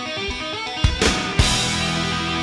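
Heavy metal band playing live, electric guitars sustaining notes over drums, with drum hits and a cymbal crash about a second in.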